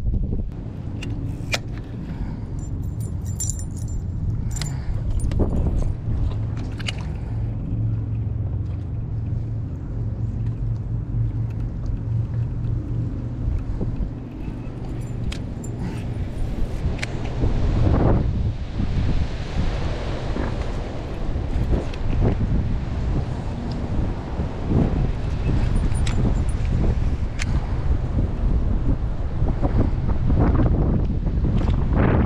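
Wind buffeting the microphone on a fishing boat, with a low steady hum underneath and scattered clicks and knocks from handling rod and reel.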